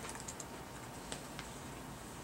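Scattered light clicks of typing on a laptop keyboard, a few together at the start and two more a little after a second in, over quiet room tone.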